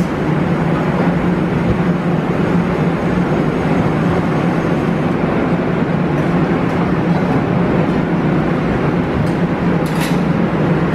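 Steady machine drone: a low hum under an even rushing noise, with no change in level.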